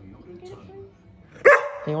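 A large curly-coated dog gives a single loud bark about one and a half seconds in, a short call that drops sharply in pitch; the owner takes it as the dog asking for her help finding its ball.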